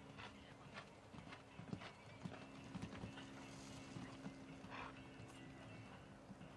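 Faint hoofbeats of a horse cantering on sand arena footing, an uneven run of soft strikes, over a steady low hum.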